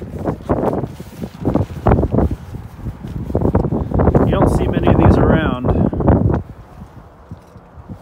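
A man talking indistinctly, with handling rustles and knocks as he climbs into a pickup truck's cab.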